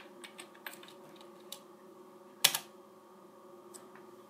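Computer keyboard keys tapped lightly a few times as a command is finished, then one much louder keystroke about two and a half seconds in, the Return key entering the command.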